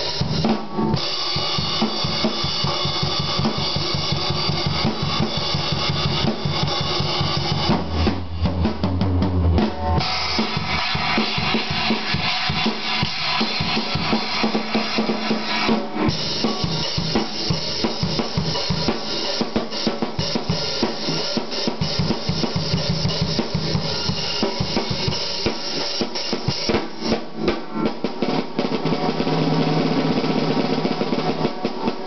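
Acoustic drum kit played continuously: kick drum, snare, toms and cymbals in a busy, loose beat, played badly by a tired drummer. A stretch of heavier low drum hits comes about eight seconds in.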